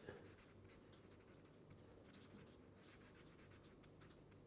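Red marker pen writing on paper: faint, quick scratchy strokes as a word is handwritten.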